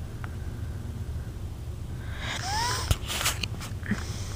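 A pet close to the microphone gives a short squeaky whine that rises then falls about two and a half seconds in, followed by a click and a few quick breathy sniffs, over a steady low hum.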